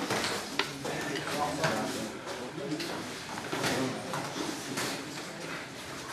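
Savate bout in a hall: a few scattered sharp knocks of boxing gloves striking and feet on the mat, over faint background voices.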